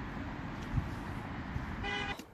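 Steady outdoor background noise with a low rumble, typical of distant traffic, with a faint thump just before a second in. Near the end a short pitched toot sounds, typical of a vehicle horn.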